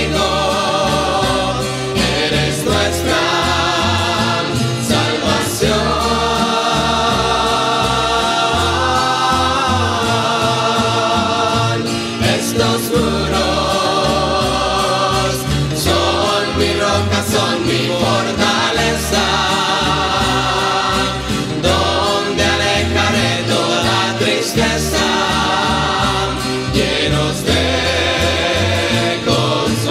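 Christian rondalla song: a group of voices singing in harmony, with vibrato, over guitars and a steady bass line.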